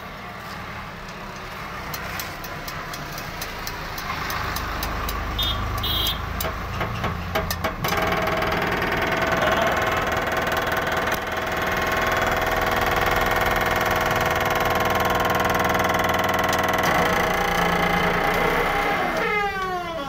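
A vehicle engine running nearby, growing louder over the first several seconds and then holding steady, its pitch dropping near the end.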